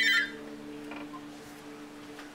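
A telephone ringing with a rapid trilling ring that cuts off about a quarter of a second in, leaving a low steady hum.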